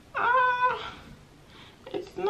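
A single high-pitched vocal call, about half a second long, with a quick upward slide into one held note.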